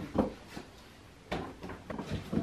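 A few short, dull knocks and creaks from a freshly self-assembled stool as a person sits and shifts his weight on it, the loudest just past a second in; the stool is loose and wobbly.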